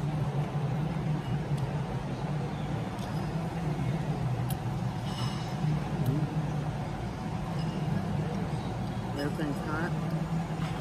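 Dining-room background: a steady low hum with a faint murmur of distant voices. A few light clinks of cutlery on a plate come about one and a half, four and a half and six seconds in.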